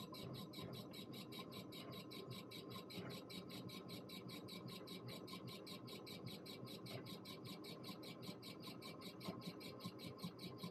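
Laser engraver's stepper motors driving the head in a raster pass, chirping in an even pulse of about five a second over a steady thin whine. This is the machine engraving a logo under a LaOS controller.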